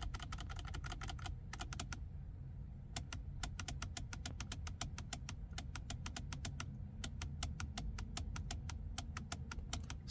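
Rapid clicking of a steering-wheel push button on an S197 Mustang, pressed again and again, several clicks a second, to step through the instrument cluster's engineering test mode screens. There is a short lull about two seconds in.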